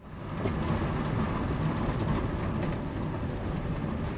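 Steady rumble of a campervan's tyres on a wet gravel road, heard from inside the moving van, with faint ticks of grit or rain.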